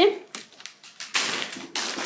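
Plastic chip bag being handled and put down: a few light crackles and taps, then a louder rustle of crinkling packaging from about a second in.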